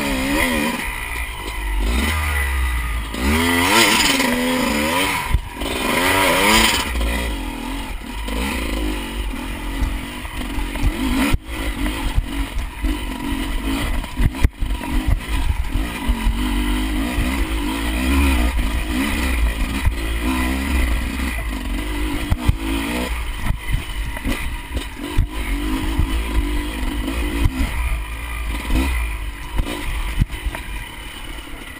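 Enduro dirt bike engine under the rider, revving hard in repeated bursts as the throttle is opened and closed over the first several seconds, then pulling at steadier, lower revs. Short knocks and rattles from the bike over the rough track sound throughout.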